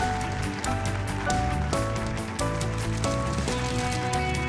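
Instrumental opening-title theme music: a melody moving in held, stepped notes over a sustained bass, with a busy, fast high percussion tick running through it.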